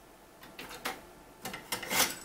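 Dual cassette deck's eject mechanism and tape door clicking and clattering as a cassette is handled and pulled out: a string of sharp clicks, the loudest near the end.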